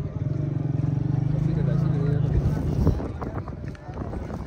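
A motor vehicle engine running close by with a steady low pulsing hum that fades after about two and a half seconds. A single knock follows.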